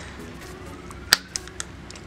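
Plastic head of a Hasbro Marvel Legends Thanos action figure snapping onto its neck joint: one sharp click a little past halfway, followed by two fainter clicks, the sign that the swapped head has seated properly.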